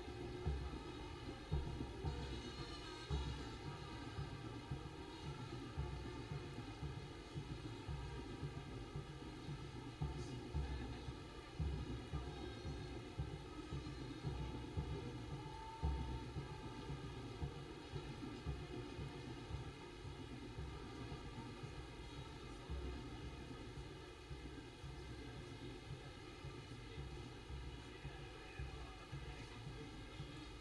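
Low, gusty rumble of wind buffeting an outdoor microphone over faint open-air background noise.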